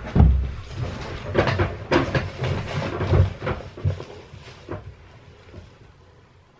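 A run of thumps and knocks, two heavy ones at the start and then lighter clatters, dying away over the last second or so.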